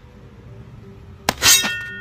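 A sharp metallic clang-like ding about one and a half seconds in, just after a small click, with several high tones ringing on as it fades.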